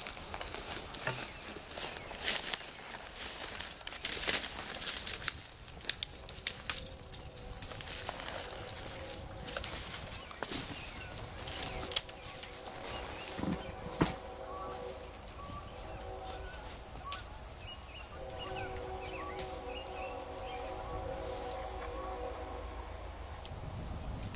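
Footsteps and rustling through dry brush, with twigs cracking and snapping over the first several seconds. Later comes a steady droning hum of several held tones that fades in and out, with faint bird chirps above it.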